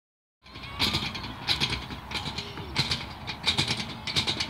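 Playground equipment springs creaking in a steady rhythm, a short metallic squeak about every two-thirds of a second, beginning about half a second in.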